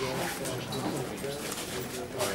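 Indistinct voices of several people talking quietly in a classroom, with no clear words.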